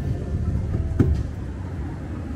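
Street ambience: a steady low rumble, with one sharp click-knock about a second in.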